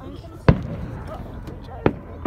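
Two sharp firework bangs a little over a second apart, the first about half a second in and the second near the end, with voices talking in the background.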